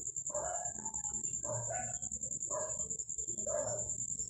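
A dog barking repeatedly, about once a second, over a steady high-pitched whine.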